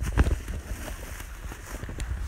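Loose hay rustling and bumping as it is grabbed and moved for feeding, with a few knocks near the start. A low rumble from the phone being jostled runs under it.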